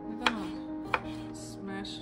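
A knife slicing through a tomato and knocking twice on a wooden cutting board, over background music.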